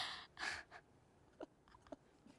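Two short, breathy exhalations from a person, about half a second apart, followed by faint scattered clicks.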